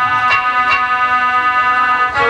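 Instrumental music between sung lines: sustained organ-like keyboard chords held steady, with two light percussive taps in the first second.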